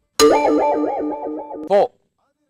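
Comedy sound effects added in editing: a short electronic jingle of quick stepping notes, then a springy cartoon boing near the end.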